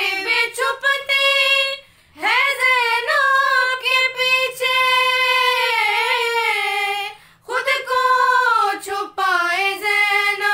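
Women's voices singing a noha, a Shia mourning lament, together and unaccompanied: long, wavering held phrases with brief breaks about two seconds in and about seven seconds in.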